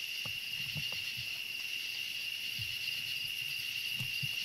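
A night insect chorus of crickets: a steady, high-pitched trill that holds through the whole stretch, with a few faint low thumps beneath it.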